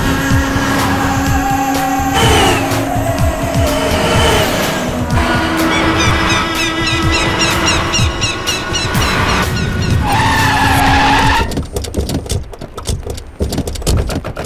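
Dramatic film background score with sustained tones and a steady beat, mixed with vehicle sounds as a convoy of SUVs closes in on a police bus. The score cuts off suddenly about eleven and a half seconds in, leaving scattered vehicle noise and clicks.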